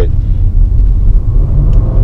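In-cabin sound of a Nissan Teana's 3.5-litre V6 pulling through its CVT in DS mode: a loud, steady low rumble of engine and road, with a faint engine note rising in pitch in the second half as the car picks up speed.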